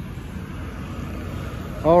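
Steady low rumble of distant road traffic, with a spoken word starting near the end.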